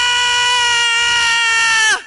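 A voice holding one long, loud, high wail on a single note. Its pitch drops as it breaks off near the end.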